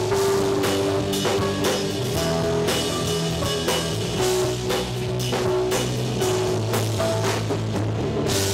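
Live rock band playing an instrumental passage: a drum kit keeping a steady beat of about two hits a second under bass guitar, electric guitar and a Nord Stage 2 keyboard holding sustained notes.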